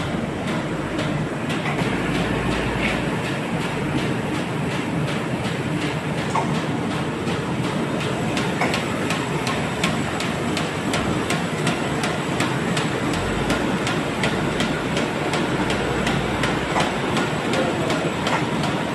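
CHM-1400 four-reel paper sheeter running steadily, sheeting 65 gsm offset paper: a continuous mechanical noise with a fast, regular clicking through it.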